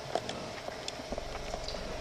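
Quiet hall ambience with scattered small clicks and knocks. A low electrical hum comes in about a second in.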